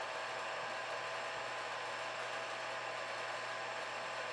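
A steady, even whirring hiss with a faint low hum underneath, unchanging throughout.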